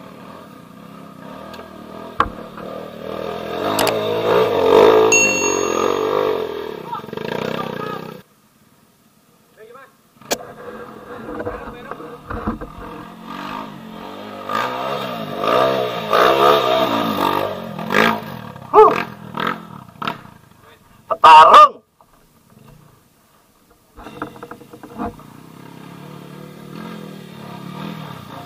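Trail motorcycle engines running and revving unevenly as riders work along a dirt track. The sound drops out twice for about two seconds.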